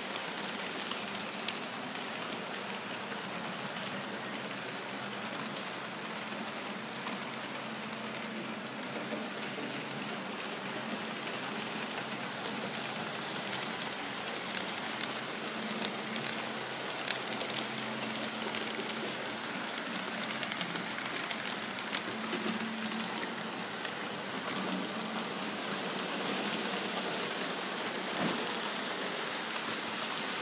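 HO-scale model trains running on the layout's track: a steady rolling hiss of metal wheels on the rails with a faint electric motor hum and occasional small clicks.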